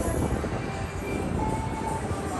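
Steady low rumble of a restaurant dining room's background noise, with faint background music.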